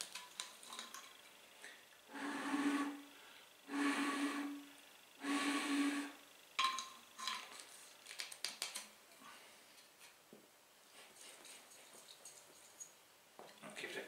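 Glass jar pulse jet being handled and readied for a run: three rushing sounds of about a second each, each carrying a steady low tone, then faint clicks and rubbing of the jar and its lid.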